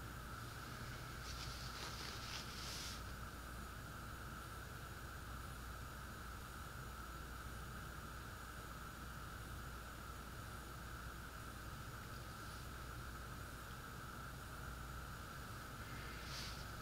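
Faint steady background hum and hiss (room tone), with a brief faint rustle about a second or two in.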